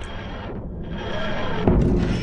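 TARDIS materialisation sound effect: a sustained tone that ends in a loud, low thud near the end.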